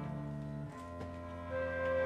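Chamber orchestra playing slow, sustained music on bowed strings and flute. The low chord changes about two-thirds of a second in, and a new higher held note enters near the end.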